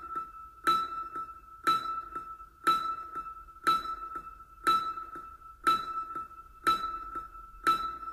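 Intro music built on a ringing, bell-like chime struck about once a second, each strike holding one clear pitch as it dies away, with lighter ticks between the strikes.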